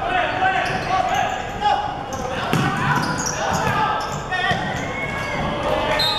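Futsal match in a large sports hall: players shouting and calling, with the thuds of the ball being kicked and bouncing on the hard court, all echoing. The strongest kick comes about two and a half seconds in.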